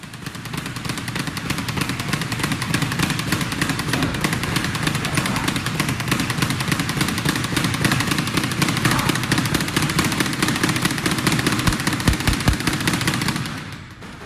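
Speed bag punched at high speed, rattling against its wooden rebound platform in a continuous rapid drumroll of hits. It stops shortly before the end.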